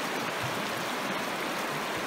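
Shallow, fast river current running over a riffle: a steady rush of flowing water.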